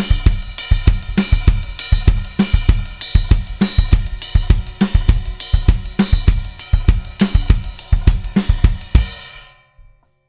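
Drum kit playing a funk groove: a steady hi-hat and cymbal ostinato with regular snare backbeats, and the bass drum playing a pattern of paired notes (groups of twos) against it. The playing stops about nine and a half seconds in, and the cymbals ring out briefly.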